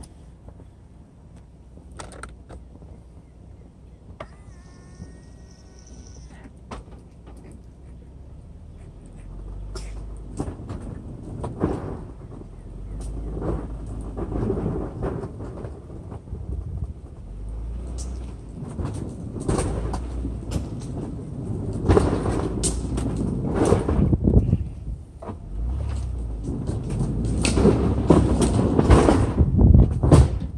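Car rolling slowly along a paved driveway: a low rumble of engine and tyres with wind buffeting the microphone. It is quiet at first, then grows louder and gustier from about a third of the way in.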